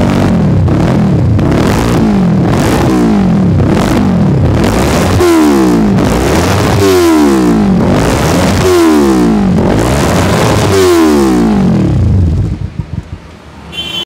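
Kawasaki Ninja 300 parallel-twin with an Akrapovič aftermarket exhaust, revved with repeated throttle blips about once a second, the pitch rising and falling each time. The revving drops away near the end.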